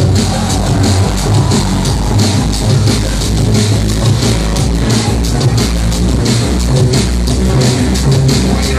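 Loud electronic dance music from a DJ set over a club sound system, with heavy bass and a fast, steady beat.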